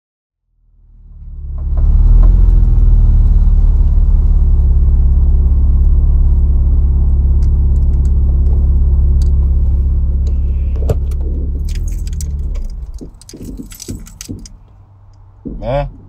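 A car engine running with a steady low rumble, heard from inside the cabin. It fades in over the first couple of seconds, then dies away about twelve seconds in as it is switched off. Light jingling of keys follows.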